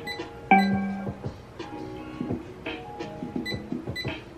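Instrumental music played through the small built-in Bluetooth speaker of an ArtNaturals essential oil diffuser, turned all the way up yet still not loud. It is a run of sustained pitched notes, with a strong low note coming in about half a second in.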